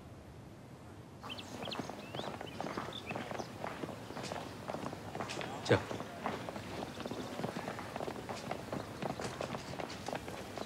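After about a second of quiet, several people walk briskly in hard-soled shoes across stone paving: a busy run of scattered footsteps that keeps on, with voices faintly behind it.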